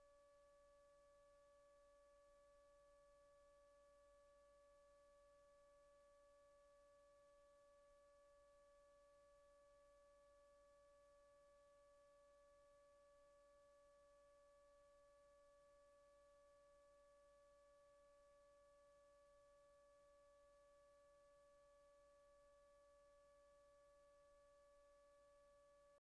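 Near silence, with only a very faint steady electronic tone and a few higher overtones that do not change.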